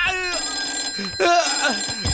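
A mobile phone ringing with steady high tones, under short stretches of a man's voice, once near the start and again about a second and a half in.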